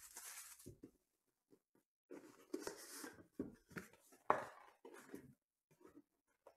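Quiet handling of a cardboard trading-card box: a brief rustle of plastic wrap at the start, then scattered rustling and tapping as the box's flip-top lid is opened, with one sharp click about four seconds in.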